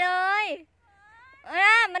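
A woman's voice in high-pitched, drawn-out exclamations: one long cry at the start, a short pause, then more excited speech near the end.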